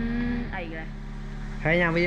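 Vehicle engine idling steadily, a constant low hum, with a man talking over it.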